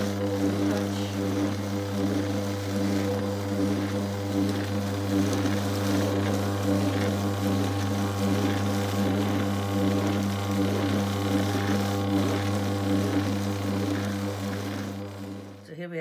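Electric drum carder running: its motor gives a steady low hum while the drums turn. It cuts off just before the end, when the machine is switched off.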